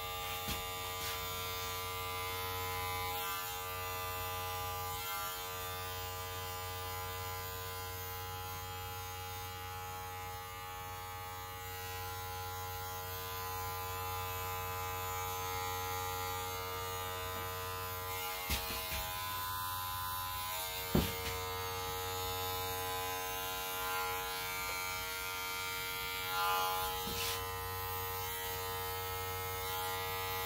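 Electric hair clippers buzzing steadily as they taper short hair at the nape of the neck. A few short sharp clicks break in near the middle, the loudest about two-thirds of the way through.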